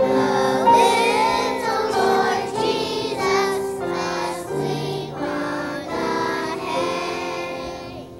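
Children's choir singing a Christmas song in held, phrased lines over steady instrumental accompaniment; the voices fall away at the end of a phrase near the end.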